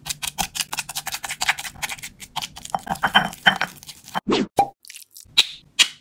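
Stone pestle mashing avocado in a stone mortar: quick repeated wet strikes, several a second, with two deeper, duller sounds a little after four seconds in.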